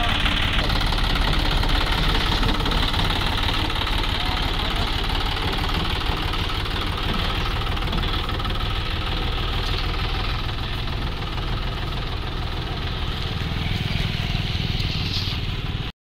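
John Deere 5050E tractor's three-cylinder diesel engine running steadily under load as its front dozer blade pushes soil. The sound cuts off abruptly at the very end.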